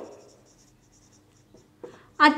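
Marker pen writing on a whiteboard: a run of faint, quick strokes as letters are drawn.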